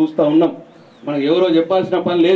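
Speech only: a voice speaking in phrases, with a pause of about half a second shortly after the start.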